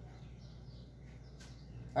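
Faint high chirps, like birds in the distance, over quiet room tone, with a faint click about one and a half seconds in.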